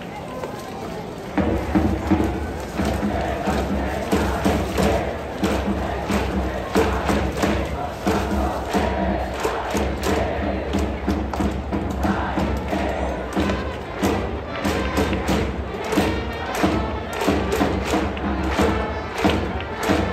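Baseball cheering section playing a batter's cheer song, starting abruptly about a second and a half in: drums beating steadily under brass and a crowd of fans chanting in unison.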